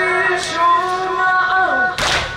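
A male lament reciter (radood) chanting a latmiya in one long, drawn-out high phrase, the held notes sliding up and down between pitches.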